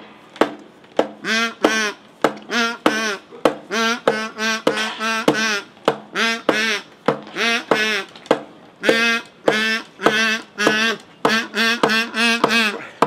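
A kazoo buzzing out the tune in wavering, vibrato-laden notes over a strummed acoustic guitar, whose strokes land as sharp regular strums between and under the kazoo notes.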